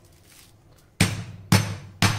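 A small cast-iron skillet pounding a chicken breast fillet flat through plastic film on a cutting board: two heavy thuds about half a second apart, starting about a second in, with a third right at the end.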